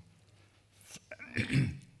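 A man clears his throat with a short cough, about a second and a half in.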